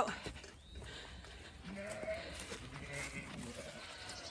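A Zwartbles sheep bleating faintly about two seconds in.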